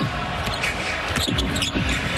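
A basketball being dribbled on a hardwood court over the steady noise of an arena crowd.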